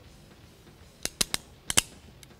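Hand crimping pliers clicking as they close on a spark plug wire terminal, crimping it onto the wire's conductor. There are five sharp clicks, starting about a second in: three quick ones, then two more.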